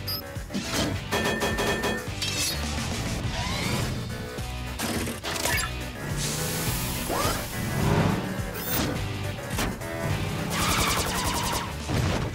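Cartoon action music under a car chase, broken by repeated crashes and impact sound effects, with a quick run of rattling clicks near the end.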